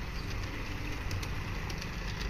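Garden-scale model train running on outdoor track: a steady low rumble with a few faint clicks.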